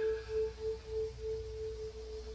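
A single sustained electric guitar note ringing with an even, pulsing waver about three times a second, left to sound between songs.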